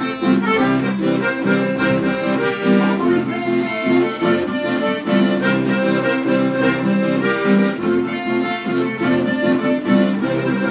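Chamamé played on an accordion, which holds chords and melody over two acoustic guitars strumming a steady rhythm.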